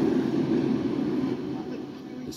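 Read-along soundtrack sound effect of a heavy, low rumble for the ship lurching to a sudden stop, easing off over the last half second.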